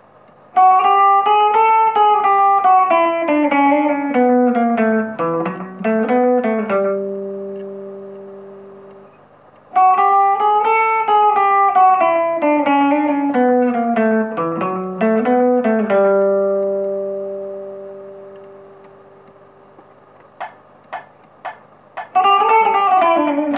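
Epiphone Wildkat electric guitar playing a rockabilly turnaround lick in G, twice. Each time the lick climbs briefly, steps down through a run of notes and ends on a held note that rings out and fades. A few light string clicks come near the end over a low steady hum.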